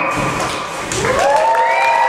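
The show's music fades out and an audience bursts into applause and cheering. From about a second in, a high rising whoop is held over the clapping.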